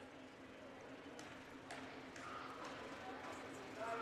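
Faint gym ambience with a low steady hum and a few faint knocks on the hardwood: a basketball being bounced by the player at the free-throw line.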